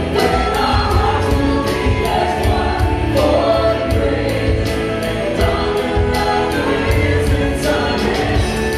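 A live worship band plays a slow song: several voices sing together over electric guitars, bass and keyboard, with a steady beat that keeps going throughout.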